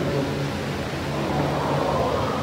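A steady low hum under a faint wash of background noise, with no one speaking.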